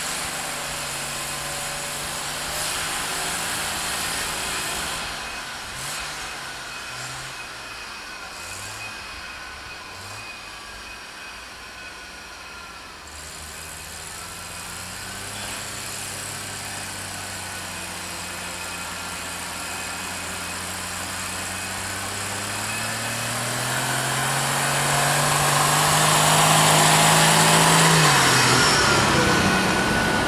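Jeep engines working through deep snow, the pitch wavering as they crawl, then revving higher and louder over the last third before easing off near the end.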